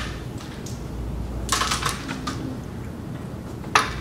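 A carrom striker being set down and tapped on the board: a click at the start, a quick cluster of clicks about halfway through, and a sharper, louder click near the end as it is placed on the baseline.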